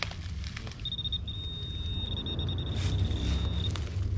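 A metal detector's high steady beep, starting about a second in and breaking into rapid pulses for a stretch in the middle, signalling more metal in the dug hole. A low steady rumble runs underneath.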